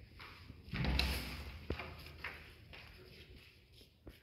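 A short rustling burst about a second in, followed by a few light knocks, from walking and handling in a bare unfinished room.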